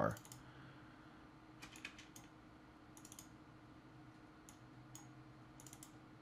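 Faint clicking of a computer mouse and keyboard in small clusters, about two seconds in, around three seconds and again near the end, over a low steady hum.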